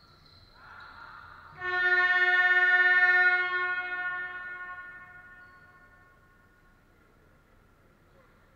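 Basketball scoreboard horn sounding about a second and a half in: a loud, buzzing held tone lasting about two seconds, then dying away over the next few seconds.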